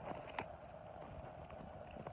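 Faint handling of an aluminium-foil-wrapped sandwich being opened, a few small crackles of foil over a steady low background hiss.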